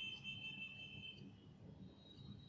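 Faint room tone with a low hum, and a faint high steady whine that stops a little over a second in.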